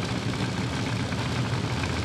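Nitro drag-racing engines idling on the starting line, a steady low rumble.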